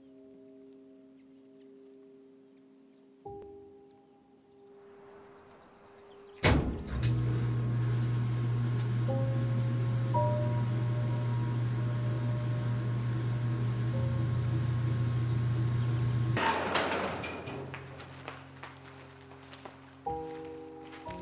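Soft sustained music tones, then a motorised tilt-up garage door opening: a sharp clunk as it starts, a steady motor hum for about ten seconds as the door swings up, and a noisy rush as it stops and fades out.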